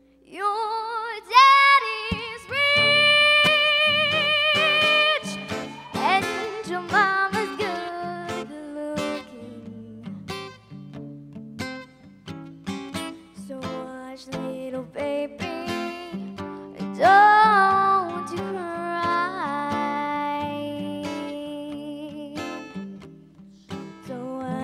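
A young girl singing solo into a microphone over plucked guitar accompaniment, holding long notes with vibrato near the start and again about two-thirds of the way through.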